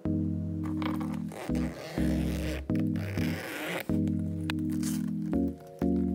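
Background music with held chords and a soft ticking beat. Over it, clear plastic binder sleeves crinkle and rustle for about three seconds as the pages are turned.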